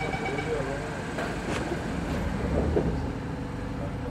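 Doors of an SMRT C151A Kawasaki train closing at a station stop: a steady high warning tone stops about half a second in, then the doors slide shut, with voices in the background.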